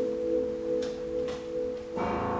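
Russian folk-instrument orchestra holding a soft, steady sustained chord, with a couple of faint plucked notes over it; a fuller new chord comes in at the very end.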